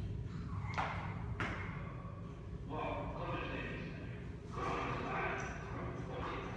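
Indistinct voices talking in a large room over a low steady hum, with two sharp thuds in quick succession about a second in.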